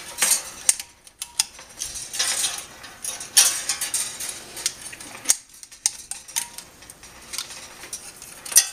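Baling wire scraping and clicking against the steel of an electric motor stator as it is fed through the slots: irregular short metallic scrapes and ticks.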